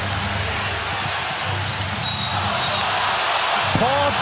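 Arena crowd noise at a basketball game, with a basketball being dribbled on the hardwood court. The crowd grows louder about halfway through.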